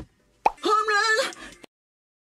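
A sharp pop, then about a second of a high-pitched male singing voice from a recording-booth take, cut off abruptly into silence.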